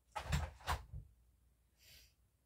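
A door being shut: a few quick knocks and rubs, all within the first second.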